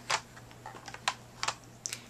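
Small plastic makeup cases being handled, giving a few sharp, separate clicks and taps spread over two seconds, like a lipstick tube being picked up and its cap worked.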